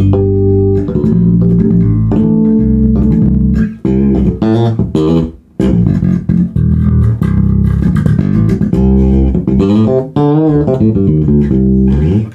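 Dingwall NG2 fanned-fret electric bass played through a Gallien-Krueger MB Fusion 800 head and a Bear Amplification ML112 cabinet: a bass line of plucked notes, with a short break a little after five seconds in.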